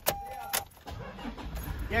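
Two sharp clicks with a short beep between them, then a car engine starting and running with a low rumble, heard from inside the cabin.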